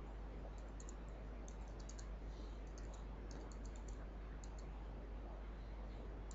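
Faint computer keyboard typing: short runs of light key clicks with pauses between them, over a steady low hum and hiss.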